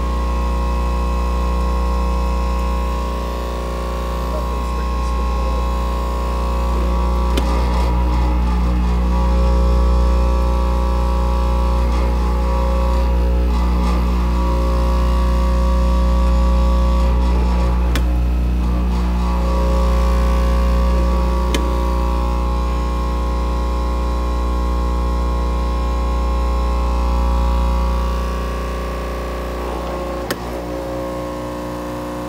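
Batchmaster IV five-gate counter running while it feeds and counts gummies: a loud, steady machine hum made of several held tones, with the strongest low down.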